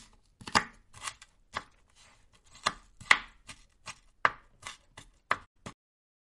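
Kitchen knife shredding cabbage on a plastic cutting board: a run of sharp, uneven chops of the blade onto the board, about two a second, stopping shortly before the end.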